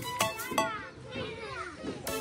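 Cartoon children's voices playing and calling out over a brief lull in a children's song, with soft music underneath.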